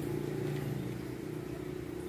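Steady low engine hum holding an even pitch.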